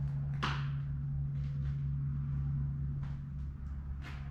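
Footsteps and knocks on old wooden floorboards, the clearest about half a second in, over a steady low hum.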